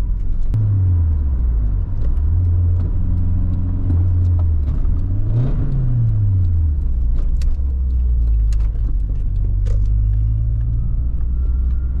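Nissan 240SX's four-cylinder engine with an aftermarket exhaust, heard from inside the cabin while driving. Its pitch drops about half a second in, holds, then rises and falls again around five to seven seconds in as the gears are worked. After that it runs steady, rising a little near the end.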